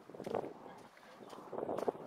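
Wind noise on the microphone, with a brief bit of speech just after the start and a few faint clicks near the end.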